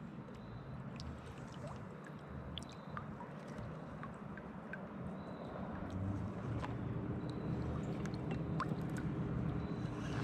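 Water lapping and gurgling softly against a sit-on-top kayak's hull, with scattered small drips and clicks. The low wash gets a little louder in the second half.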